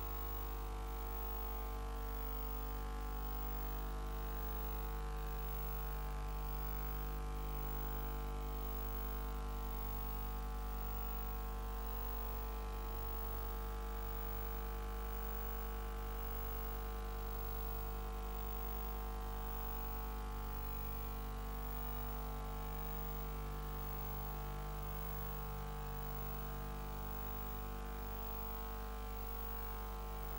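Steady electrical mains hum with a buzz of many evenly spaced overtones, unchanging throughout; no other sound stands out.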